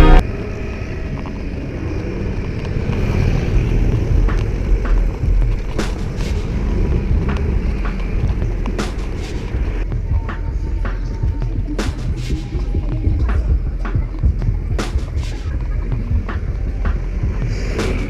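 Wind buffeting the microphone and road rumble while riding a city bicycle, with scattered sharp clicks and rattles from the bike jolting over the road surface.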